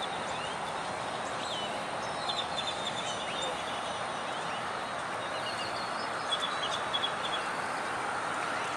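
Birds chirping in short bursts of calls over a steady hum of road traffic.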